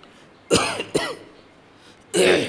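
A man coughing and clearing his throat twice into a close microphone: two short, harsh bursts about half a second apart.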